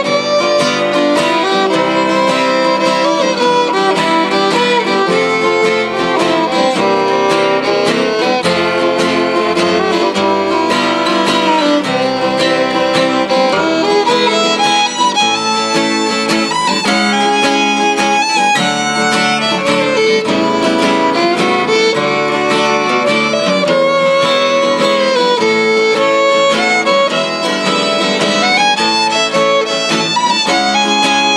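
Bowed fiddle playing a continuous contest tune, accompanied by two strummed acoustic guitars.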